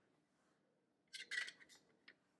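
An acrylic nail brush wiped against the rim of the monomer dish: a short run of faint, high, scratchy scrapes about a second in.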